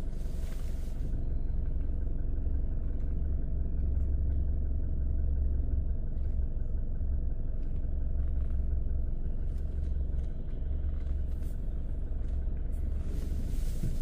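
A stationary car's engine idling, heard from inside the cabin as a steady low rumble.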